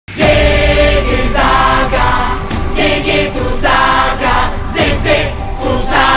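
Music with a chorus of singing voices over a low bass.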